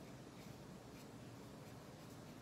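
Faint scratching of a water-based felt-tip marker's nib stroking across paper as an area is coloured in, a few soft strokes over low room hiss.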